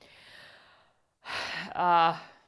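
A woman's soft sighing exhale, then a sharp intake of breath about a second and a half in, followed by a brief voiced sound near the end.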